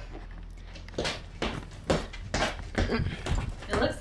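Irregular knocks and clicks, about seven of them, starting about a second in: handling noise from the camera being moved about.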